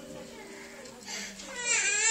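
A young child's high-pitched cry breaks out about a second and a half in, loud, with a wavering pitch.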